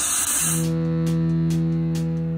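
Rock-style intro music: a loud burst of noise for about the first half second, then a single held guitar chord ringing steadily.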